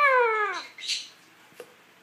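A lutino Indian ringneck parakeet with its head inside a cardboard tube gives one drawn-out call that rises and then falls in pitch. A brief hiss follows about a second in.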